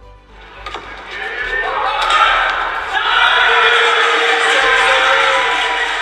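Loud shouting and cheering after a won point in a badminton match, including a player's celebratory yells, building about a second in, loudest through the middle and fading near the end.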